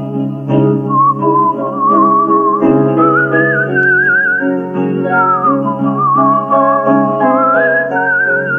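Music: a whistled melody with a wavering vibrato over instrumental accompaniment. The tune enters about a second in and climbs higher midway.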